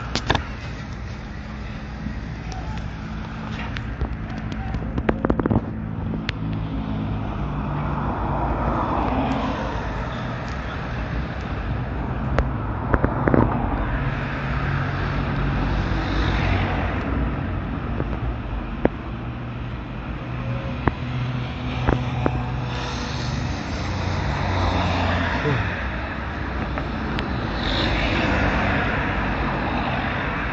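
Street traffic: cars and vans driving by one after another over a steady low rumble of engines, each passing vehicle swelling and fading away, about four times. A few sharp knocks stand out along the way.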